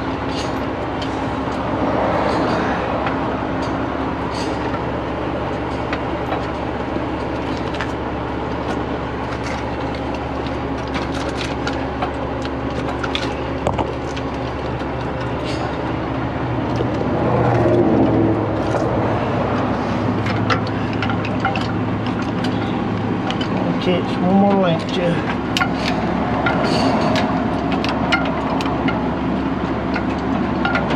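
A heavy truck's engine idling steadily, with scattered metallic clinks of a heavy chain being handled.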